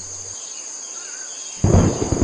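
Crickets chirping steadily as a sound-effect backdrop, then about one and a half seconds in a sudden loud clap of thunder breaks in as a storm begins.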